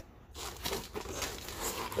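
Cardboard boxes and their packing material being handled and shifted, giving irregular crinkling and rustling.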